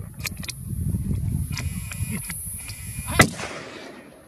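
One loud hunting-rifle shot about three seconds in, with a short echo after it. A few fainter sharp cracks come before it over a low rumbling noise.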